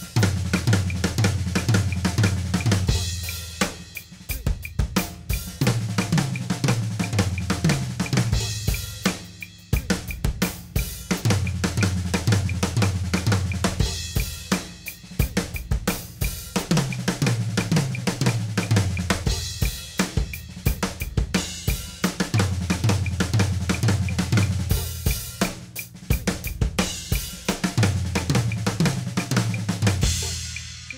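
Drum kit played with sticks: the flammed "bludgeon" fill, a flam followed by a doubled right stroke and a left, orchestrated between tom and snare over bass drum and cymbals. It repeats as a phrase about every five to six seconds, each with a run of low tom strokes, and dies away at the end.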